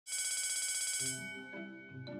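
Electric school bell ringing with a fast, even rattle for about a second, then stopping as soft music with mallet-like tones comes in.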